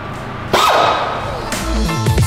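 Background music with a heavy bass starts up, led in by a sudden hit with a falling tone about half a second in.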